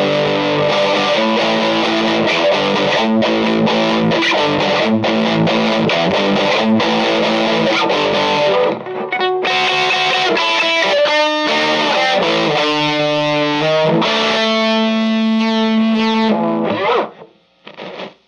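Electric guitar played through a Vox Lil' Night Train NT2H tube amp head: chords ringing out with a short break about halfway, the playing stopping about a second before the end.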